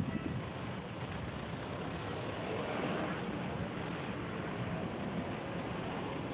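Road traffic passing close by: cars driving past in a steady wash of traffic noise that swells a little about halfway through.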